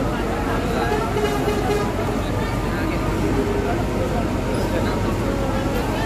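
Crowd of waiting passengers talking over the steady low hum of a large diesel bus idling at the platform.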